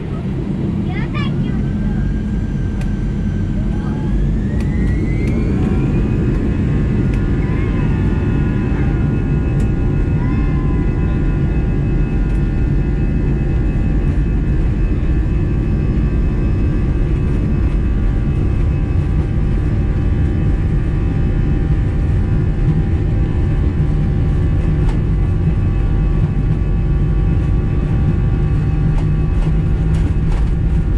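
Airbus A320's CFM56 turbofan engines heard from inside the cabin spooling up for takeoff: a whine rises in pitch and the noise grows louder over the first six seconds or so. It then holds steady at high power, a heavy rumble under several steady high whining tones.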